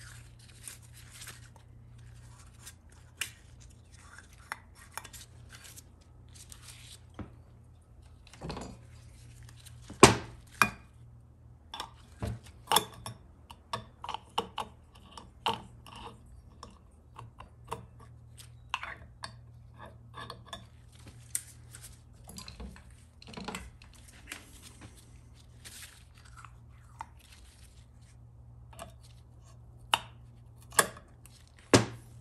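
Irregular small metal clicks and knocks of parts and tools against an aluminium transmission valve body on a steel workbench, with one louder knock about ten seconds in, as a stuck valve-train piston is worked at in its bore.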